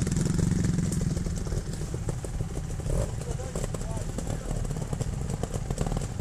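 Trials motorcycle engine running steadily at low revs, a close, low, rapid thrum as the bike sits on the trail.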